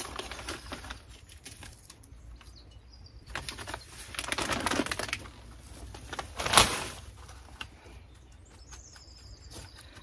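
Plastic compost bag rustling and crinkling as it is handled, with compost being tipped into a small plastic tub. A sharp knock comes about two-thirds of the way through.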